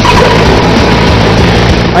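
2012 Mercedes-Benz A-Class on the move: a steady, loud rush of road and engine noise.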